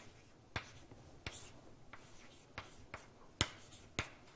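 Writing on a board: irregular sharp taps and short scratchy strokes, the loudest about three and a half seconds in.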